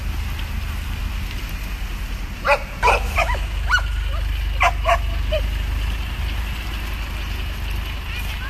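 Caged dogs barking: a cluster of short barks between about two and a half and five and a half seconds in, over a steady low rumble.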